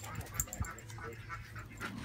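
A dog panting faintly close by.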